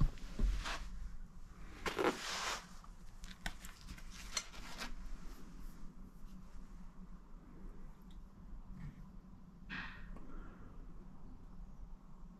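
Handling noise from a 12-gauge over-and-under shotgun being lifted off its fabric gun slip and turned over: a few rustling scuffs and a short run of light clicks a few seconds in.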